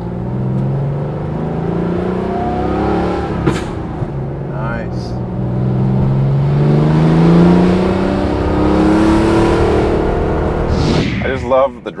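Supercharged air-cooled flat-six of a 1995 Porsche 911 Carrera 2 (993), heard from inside the cabin while accelerating: the engine note climbs in pitch, breaks briefly about three and a half seconds in, climbs again and then eases off near the end.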